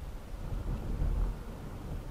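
Low, steady rumble of road and engine noise heard inside a car cruising at about 36 mph, swelling slightly about a second in.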